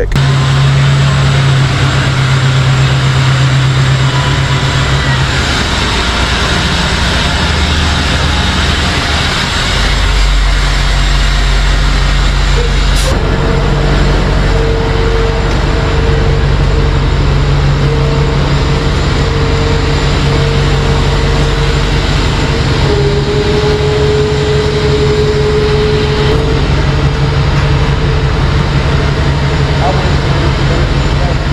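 A tow truck's engine runs steadily while driving, heard from the cab. After a sudden cut it runs on with a steady whine over it, which steps down slightly in pitch about two-thirds of the way through.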